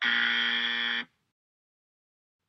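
Game-show style wrong-answer buzzer sound effect: one steady buzz about a second long that cuts off sharply, marking an incorrect answer.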